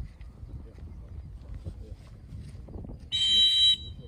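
A dog-training whistle blown once, a short shrill blast about three seconds in: the single-blast sit whistle that stops a retriever running a blind. Low wind rumble underneath.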